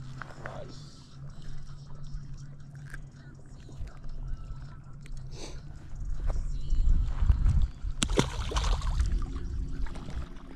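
Handling noise and low wind rumble on the microphone while a small bass is held, then a sharp click and a short splash about eight seconds in as the fish is dropped back into the lake.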